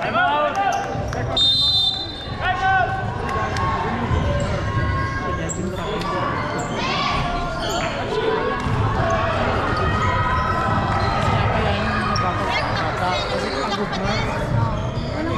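Basketball bouncing on a wooden gym floor amid players' and coaches' voices, with a short, high whistle about a second and a half in.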